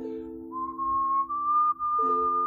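A man whistling a melody of long held notes over a strummed ukulele. A chord is struck at the start and rings under the whistle, which comes in about half a second in and steps up to a higher note; the next chord is strummed at the end.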